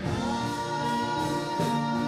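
Live church worship music: singing with keyboard accompaniment, with one long held note.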